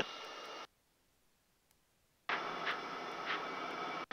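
Steady cockpit noise of a Piper M600 turboprop in flight: a rushing hiss with a faint steady whine. It cuts out to dead silence about half a second in and comes back a little after two seconds, the way a headset intercom's squelch switches it on and off.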